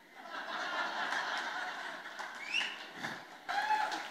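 Audience laughing at a stand-up comedian's punchline, swelling within the first second and dying away after about three seconds.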